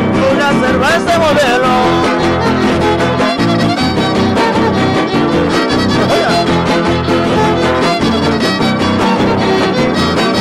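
Trío huasteco playing an instrumental passage of a son huasteco (huapango): a violin carries a gliding melody over the rhythmic strumming of a jarana huasteca and a huapanguera.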